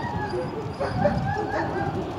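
A dog barking: a run of short, high-pitched calls about a second in.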